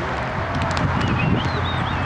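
Steady outdoor background noise with a low rumble, faint distant voices, and a few brief high chirps in the second half.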